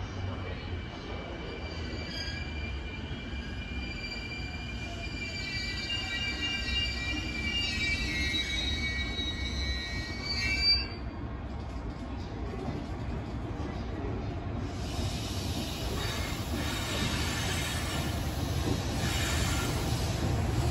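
A slowly arriving train hauled by an EF210 electric locomotive: steel wheels squeal in several thin high tones through the station points and curves for most of the first half, stopping abruptly, while the low rumble of the wheels on the rails grows louder as the train draws near.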